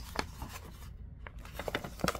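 Sheets of printer paper rustling and crackling as they are handled and turned, with a cluster of sharp crinkles in the second half.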